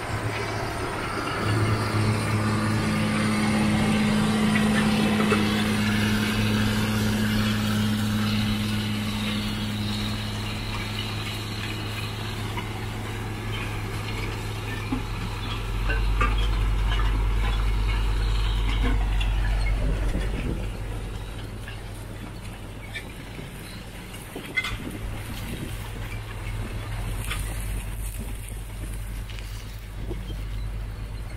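John Deere four-wheel-drive tractor's diesel engine running steadily under load as it pulls a disc through crop stubble. A deeper hum joins about halfway through for a few seconds, and the sound is quieter after that.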